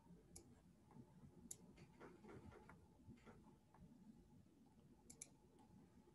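Near silence: faint room tone with a few scattered faint clicks, two of them close together near the end.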